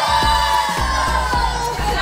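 A group of women and girls cheering with long, drawn-out whoops, over music with a steady bass beat.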